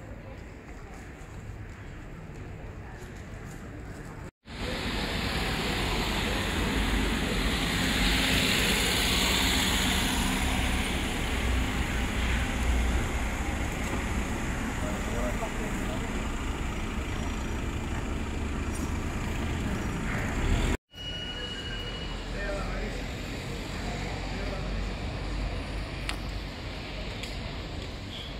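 Town street ambience with faint voices. In a louder middle stretch, cars drive past close by on a narrow road, with a low rumble that swells and fades, before it drops back to quieter street sound with voices.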